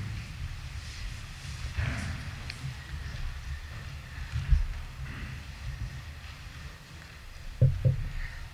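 A congregation sitting down in church pews: a low rumble of shuffling and rustling, with a dull thump about four and a half seconds in and two short knocks near the end.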